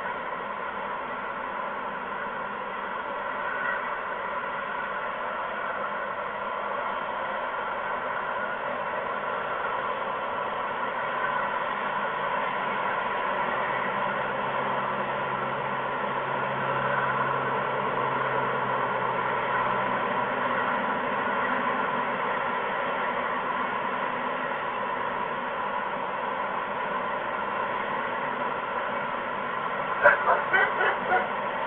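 Steady hiss of outdoor background noise. A faint low drone swells and fades in the middle, like a distant engine.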